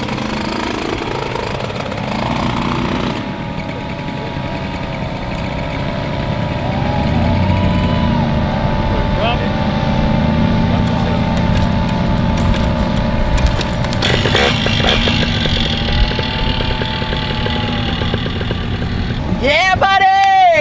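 Paramotor trike's engine and propeller running with a steady drone.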